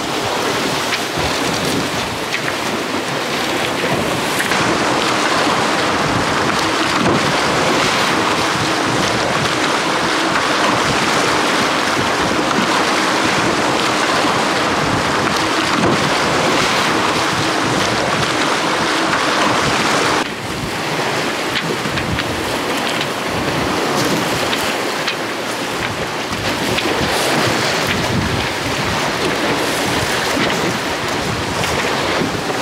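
Water rushing and splashing along the hulls of a Telstar 28 trimaran sailing at speed, with wind buffeting the microphone. The sound changes abruptly about two-thirds of the way through.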